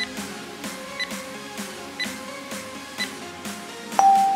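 Rest-period countdown timer giving four short high beeps, one a second, over background music.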